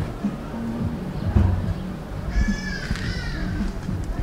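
Background music, with a high voice sounding briefly about two and a half seconds in.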